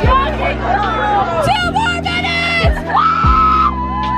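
Cheerleaders yelling and chanting a cheer over crowd chatter, with music playing underneath; one long held shout about three seconds in.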